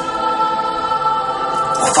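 Stage music: a choir-like chord of voices held steady, with busier sound coming back near the end.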